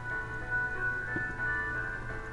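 Quiet instrumental background music of long held notes.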